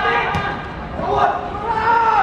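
Voices shouting across an outdoor football pitch, with a single sharp thud of a football being kicked about a third of a second in.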